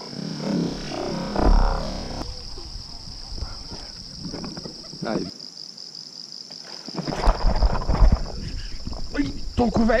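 Insects chirping steadily in a high, even trill across the flooded field, with bursts of low rumble on the microphone about a second and a half in and again around seven to eight seconds.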